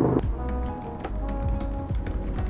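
Quick, irregular key clicks of typing on a computer keyboard, over background music with held notes and a low bass.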